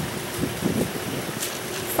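Steady outdoor background noise, like wind on the microphone or distant traffic, with a few brief scuffs about half a second in as a painter's mitt wet with gloss paint is stroked around a round metal handrail post.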